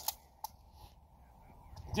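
A single short, sharp click about half a second in, against otherwise quiet background.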